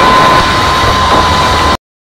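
A live forró band and a cheering concert crowd heard together as one dense, hissy wall of sound, with a single steady high note held through it. The sound cuts off suddenly near the end.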